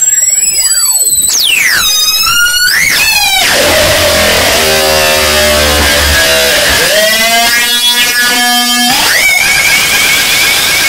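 Harsh electronic noise music: a loud, constant wall of hiss overlaid with crossing, swooping pitch glides in the first few seconds, then stacks of held tones over a low hum, ending on a tone that rises and then holds.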